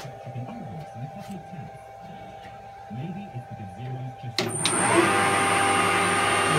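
Harrison M300 lathe started on its VFD: a click about four seconds in, then the motor and headstock run up to speed with a whine that rises briefly and settles into a steady running note, over a high steady whine.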